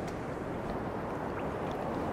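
Steady wash of the sea: surf breaking on a rocky shore, heard as an even hiss with no distinct splashes.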